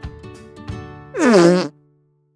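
Light children's background music, then about a second in a loud, buzzy cartoon squelch sound effect that falls in pitch over about half a second, laid over Play-Doh being pressed into a mould.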